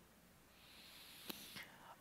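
Near silence: a man's faint intake of breath, with one small click about halfway through.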